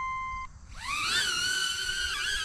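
HoverAir palm-launched selfie drone beeping once, then its propellers spinning up with a rising whine that levels off into a steady hover hum as it lifts off the hand.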